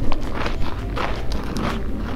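Footsteps crunching on dry, gravelly ground, a steady series of several steps.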